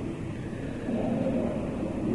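Steady background hiss with a low hum, the noise floor of an old lecture recording.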